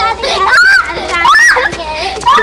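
Young children's high-pitched voices calling out in short cries close to the microphone, their pitch sliding up and down.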